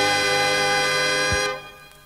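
The closing chord of a Thai pop song, held by the band with a heavy bass and a low thump just before it ends. It cuts off about one and a half seconds in, leaving a faint hiss: the end of a track.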